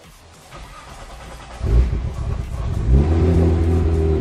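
Nissan GT-R R35's 4.1-litre stroked twin-turbo V6 being started. A brief cranking whir comes first. The engine catches about one and a half seconds in, flares up briefly near three seconds, and settles into a steady idle.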